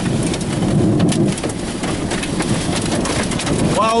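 Heavy rain and wind beating on a car, a loud steady rush with scattered sharp ticks of drops striking the windshield and body, from inside the vehicle.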